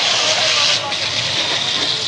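A steady, loud hiss with indistinct voices beneath it.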